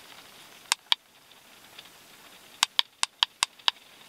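Button presses on a handheld MS309 OBD2 code reader: two quick ticks, then after a pause a run of six ticks, about five a second, as its menu is scrolled.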